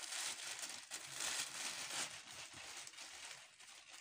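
White plastic bag rustling and crinkling as it is handled and tied shut, easing off near the end.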